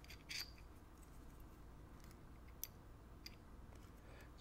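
Near silence with faint small metal-on-metal sounds: a short scrape about a third of a second in and a few tiny clicks later, from tweezers working inside a brass lock cylinder's pin chamber.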